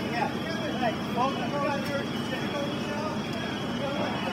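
Background voices of several people talking at once, none clear, over a steady low rumble of idling emergency vehicles.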